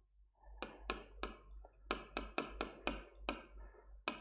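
A pen tip tapping and clicking on a hard writing surface as it writes: about ten short, sharp ticks, roughly three a second.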